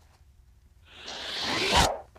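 Zipper on a fabric shoulder bag pulled open in one stroke of about a second. It grows louder and stops abruptly near the end.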